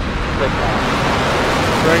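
Falcon 9's nine Merlin 1D first-stage engines at ignition and liftoff: a loud, rushing roar that builds slightly.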